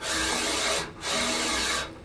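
ClearPath servo motor driving the ball-screw linear stage in two short moves of just under a second each, a steady mechanical run that starts and stops sharply, as the stage is brought up to zero on a dial indicator.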